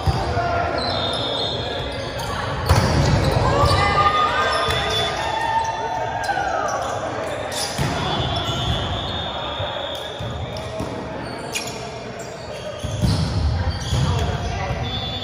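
Indoor volleyball play in a large gym hall: players' shouts and chatter echo under a run of sharp hits of the ball, with the loudest near the start and near the end.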